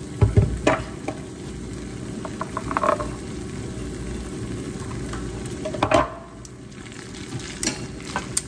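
Metal tongs tossing spaghetti carbonara in a skillet over low heat, over a faint steady sizzle, with scattered light clicks and a clatter of the tongs against the pan about six seconds in.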